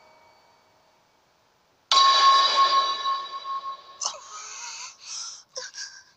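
A sound effect from the anime soundtrack. About two seconds in, a sudden bright ringing sting with several held tones starts and fades over about two seconds. It is followed by a string of short hissing and clicking sounds.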